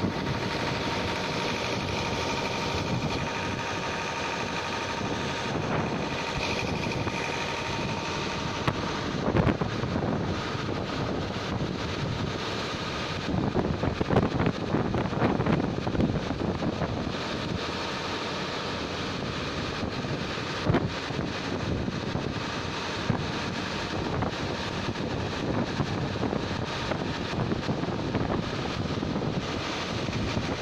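Cyclone-force wind rushing and buffeting the microphone, with louder crackling gusts midway. A faint steady whistle sits over the first several seconds.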